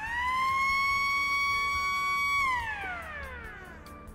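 A siren on a Zamboni ice resurfacer, switched on by a lever at the controls: it winds up quickly in pitch, holds one steady tone for about two seconds, then winds down gradually.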